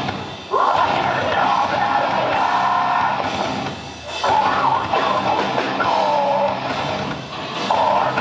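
Live rock band playing loudly: electric guitars, bass and drum kit with a singer over them. The music drops briefly about half a second in, again around four seconds, and once more near the end, coming straight back each time.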